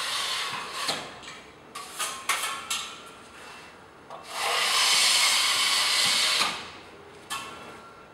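Steel drywall trowel drawn along a wet, freshly coated flat joint in two long scraping strokes, tipping the joint compound smooth and taking out its air bubbles. The second stroke is louder and lasts about two seconds. A few light clicks of the tool come between the strokes.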